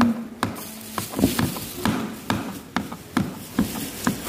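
Kitchen knife chopping a soft banana peel on a plastic cutting board: a string of short knocks of the blade on the board, about two a second and slightly uneven.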